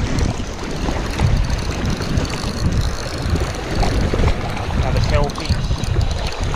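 Wind buffeting the microphone over the sea at a rock reef, a steady rumbling rush that swells and eases. A short burst of voice comes about five seconds in.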